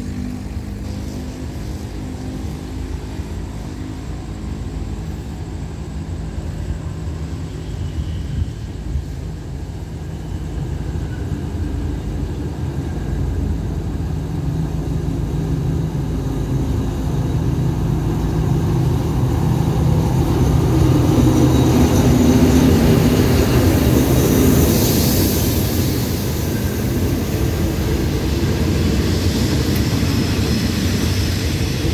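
A diesel locomotive hauling a passenger train draws up and passes close by. Its engine drone grows steadily louder, is loudest about three-quarters of the way through as the locomotive goes by, and then gives way to the coaches rolling past on the rails with a hiss from the wheels as the train slows to stop at the station.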